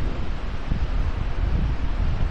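Uneven low rumble with a steady hiss above it: wind or handling noise buffeting the microphone, with no voice over it.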